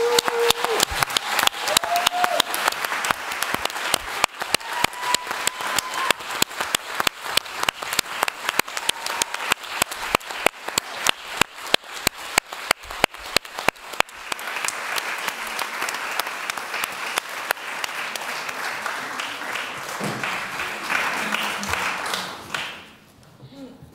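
Audience applauding after a spoken-word performance, with a few short calls from the crowd in the first seconds. The separate claps merge into denser, even applause about two-thirds of the way through, and it stops just at the end.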